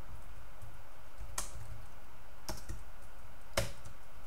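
Typing on a computer keyboard: a few separate keystrokes, three of them sharper clicks about a second apart.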